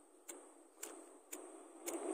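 Faint, even ticking, about two ticks a second, over a soft hiss, in a lull of the background music.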